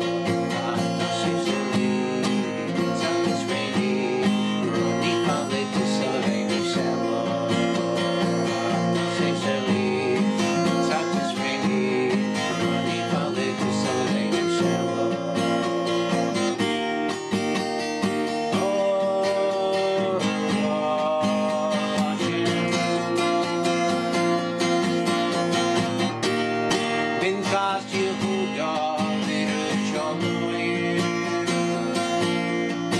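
Acoustic guitar, capoed, strummed in a steady rhythm of chords.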